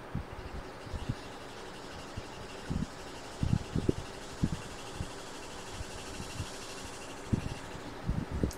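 Steady background hiss with a scattered series of short, soft low thumps, several close together in the middle.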